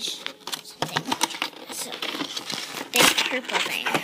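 Cardboard toy box and its packaging handled at a table: irregular rustling, crinkling and light clicks and taps, with a louder rustle about three seconds in.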